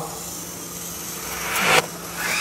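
RC Toyota LC80 crawler's motor and gear train whirring under load as it tows a loaded trailer up a wooden ramp, growing louder over the last half second and then cutting off sharply; the owner says its gear slipped on this climb.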